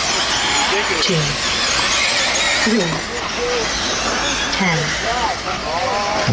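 Eighth-scale electric RC buggies racing: a steady high-pitched whine and hiss of their electric motors and drivetrains, wavering in pitch as the cars throttle on and off.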